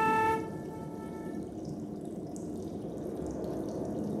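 A concert flute holds a high note that stops about half a second in. After that comes a steady noisy electronic texture from the loudspeakers, quieter than the flute, with faint high flicks over it.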